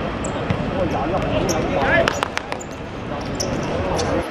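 A football being kicked on a hard outdoor pitch: a few sharp knocks about halfway through, as the ball is dribbled, with players and onlookers calling out throughout.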